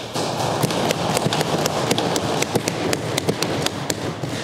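Legislature members applauding by thumping on their wooden desks: a dense, irregular patter of many knocks that thins out near the end.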